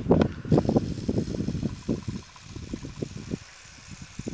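Wind buffeting the microphone of a handheld camcorder in irregular low rumbling gusts, strongest in the first couple of seconds and easing after that. Under it runs the faint whine of the camera's zoom motor as it zooms in.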